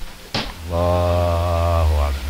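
A short click, then a man's low voice holding one long note at a steady pitch for just over a second.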